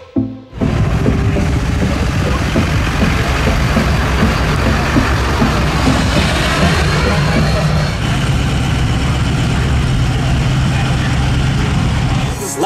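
Busy outdoor show ambience: music playing over a mix of voices and vehicle noise, steady throughout after a brief dip at the start.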